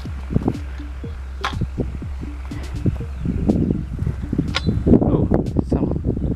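Footsteps crunching and swishing through dry grass and loose soil, with irregular crackles that thicken a few seconds in. A steady low rumble of wind on the microphone runs underneath.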